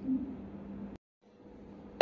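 Faint room tone between spoken sentences: a low steady hum with light hiss. About a second in it drops to dead silence for a moment, as at an edit splice, then the hum and hiss return.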